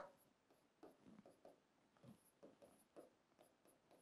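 Near silence with faint, short scratches and taps of a pen writing on a board, a few strokes scattered over the seconds.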